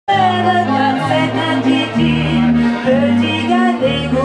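A woman sings a French chanson into a microphone, accompanied by a piano accordion and a bowed or plucked upright double bass. The bass holds long low notes that change about once a second under the sung melody.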